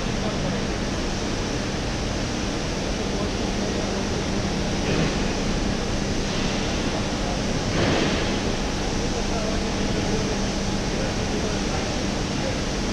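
Steady industrial noise with a constant low hum from a single-chain floor pusher conveyor running. There are two brief louder swells, about five and eight seconds in.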